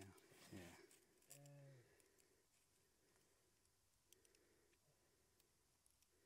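Near silence: a few faint clicks from an ice-fishing tip-up being set over a hole in the ice, with a brief voice sound in the first two seconds.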